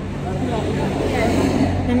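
A bus engine idling with a steady low hum, under faint chatter of voices nearby.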